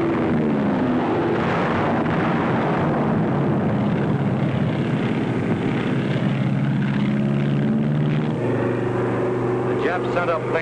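Propeller aircraft engines droning steadily, with a pitch that falls during the first second as a plane passes.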